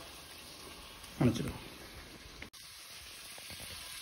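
Faint, steady sizzle of onions and tomatoes frying in oil in a pot, with a click about halfway through.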